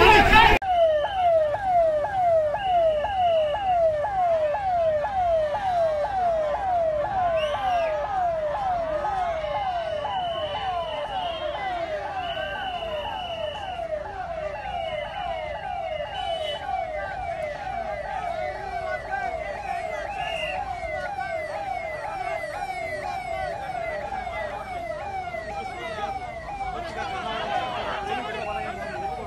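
Vehicle siren sounding a fast yelp, about three falling sweeps a second, slowly growing fainter. A steadier, higher tone sounds on and off over it in the first half.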